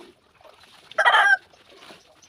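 A short, loud bird call about a second in, lasting about a third of a second.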